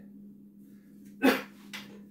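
One short, sharp vocal burst, like a cough or a bark, about a second in, over a steady low electrical hum.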